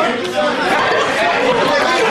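Several men's voices talking and calling out over one another in excited chatter.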